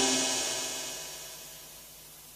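Final chord of an accordion jazz style on a Technics KN-6500 arranger keyboard dying away, its sustained notes and reverb fading steadily down to a faint hiss.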